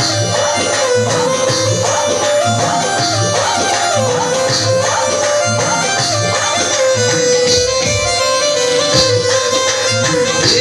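Live Rajasthani folk music played through a DJ loudspeaker system: a held melody line stepping between a few notes over a steady beat of about two pulses a second.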